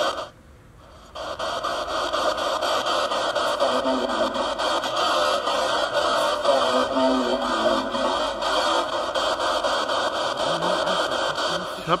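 Homemade spirit box sweeping through radio frequencies: choppy static broken into rapid even steps, with fleeting fragments of radio voices that cannot be made out clearly. The level drops briefly about a second in.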